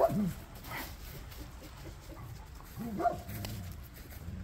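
A dog giving short, low barks and whines, once at the start and again about three seconds in.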